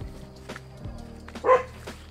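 Background music with a steady beat, and a dog giving one short, loud bark about one and a half seconds in.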